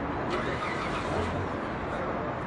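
Steady background din of a crowded hall, with a low rumble and no clear words.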